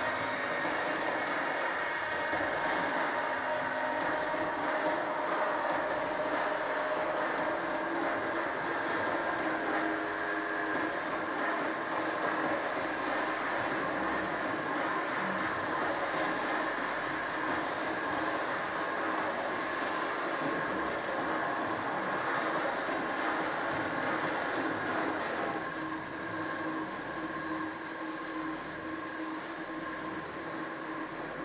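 Steady droning accompaniment with several held tones over a rumbling haze, easing a little near the end.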